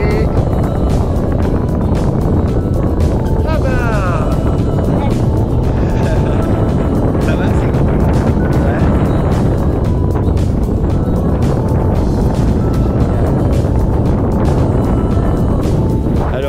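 Loud, steady wind noise buffeting the action camera's microphone as a tandem paraglider takes off and climbs in flight.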